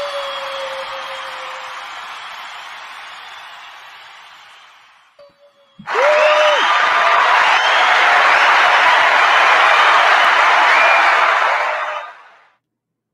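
The theme's rock music dies away over the first few seconds. From about six seconds in, a recorded crowd cheers and applauds with whoops and whistles, then cuts off abruptly near the end.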